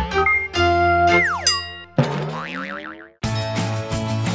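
Cartoon-style jingle with sound effects for an animated logo: held notes, a falling pitch glide, then a sudden wobbling boing that fades away. About three seconds in, new music with a strummed guitar starts.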